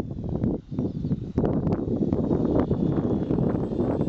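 Wind buffeting the microphone: a loud, uneven low rumble that dips briefly about half a second in.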